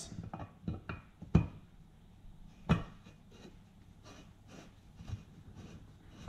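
A few short metallic knocks and clicks as a camshaft is set into the cam journals of a Toyota 1UZ-FE V8 cylinder head, the two sharpest at about a second and a half and near three seconds in.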